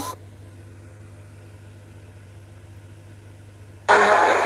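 A steady low hum with faint hiss, after a music passage cuts off right at the start. Loud speech breaks in just before the end.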